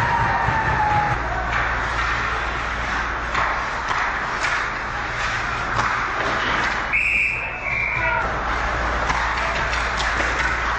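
Ice hockey game play heard from rinkside behind the net: skates scraping and sticks and puck clacking over a steady arena hum. About seven seconds in, a referee's whistle gives a short high blast, broken into two parts.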